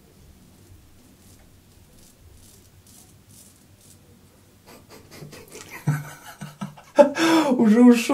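SGDG straight razor scraping through lathered stubble in short, faint strokes, which grow louder and closer together past the middle; a man's voice starts about a second before the end.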